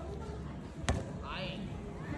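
A skateboard knocks once, sharply, on the ground about a second in, with a short faint voice just after.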